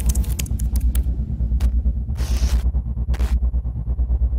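Electronic glitch logo sting: a deep bass rumble pulsing fast, about six times a second, cut through by short crackles and bursts of static.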